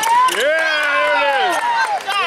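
A loud, drawn-out shout from one voice, rising at first and falling away near the end, with other voices around it in a gym crowd.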